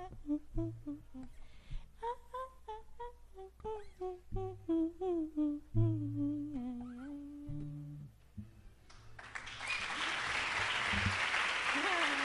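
A woman's voice humming a wordless melody in short gliding notes, settling onto a held low note. About nine seconds in, applause breaks out and carries on steadily.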